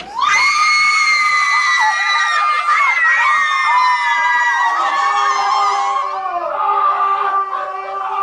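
Several women screaming with excited delight: one long, high shriek that swoops up at the start and holds for about five seconds, then gives way to lower, softer squeals.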